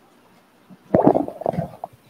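Microphone handling noise: a short burst of rumbling thumps and rubbing, about a second in, as a microphone is gripped and adjusted on its stand.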